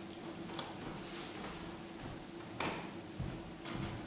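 A few light clicks and taps from handling things on a bench, the clearest about half a second in and a louder one a little past the middle, over a faint steady hum.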